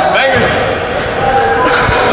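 A basketball bouncing on a hardwood gym floor, a couple of low thuds, under the shouts and chatter of players.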